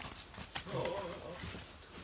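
A man exclaiming "oh, oh, oh" in surprise, with a few faint clicks and rustles of papers and an envelope being handled just before.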